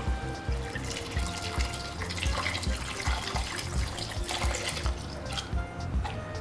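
Liquid pouring from a saucepan into a pan of curry gravy, a steady splashing trickle, over background music with a regular beat.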